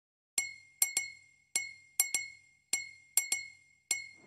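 Rhythmic clinks of struck glass, about ten sharp taps in a repeating pattern of single and paired strikes. Each rings briefly at one bright pitch, as the percussive opening of a song track.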